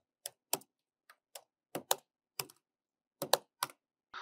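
Computer keyboard keystrokes: about ten separate, irregularly spaced key clicks as a short prompt is typed into a chat box and sent.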